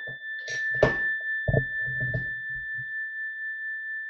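A struck meditation bell ringing on with one steady high tone, sounded to open a silent self-inquiry period. A few faint low sounds are heard beneath it in the first half.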